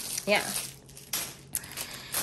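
Thin plastic packaging bags crinkling as they are handled and set down on the bed, in two short bursts: one about a second in and one near the end.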